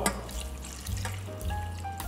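Water poured from a glass measuring jug into a stainless-steel saucepan of dried fruit, running and splashing steadily.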